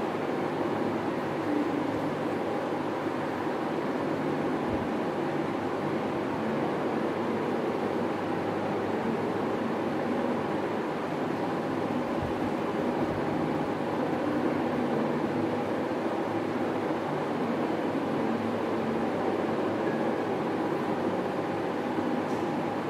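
A steady mechanical drone with a faint low hum running under it, unchanging throughout, with no speech.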